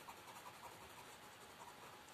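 Faint, steady scratching of a red coloured pencil shading on a paper workbook page.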